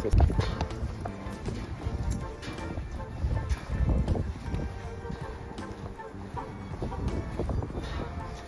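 Footsteps on paving stones while walking, irregular low thumps with a rumble from a hand-held camera, over faint background music.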